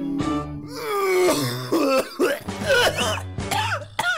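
A man coughing and clearing his throat repeatedly over the song's backing music, starting just after a held sung note ends.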